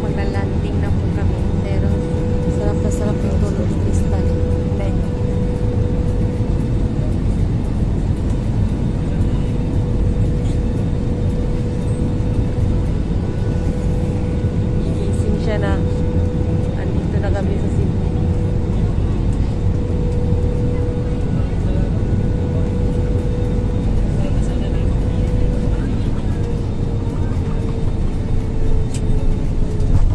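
Airliner cabin noise: a loud, steady engine rumble with a constant hum, the hum falling slightly in pitch near the end, heard from inside the cabin as the plane comes in to land.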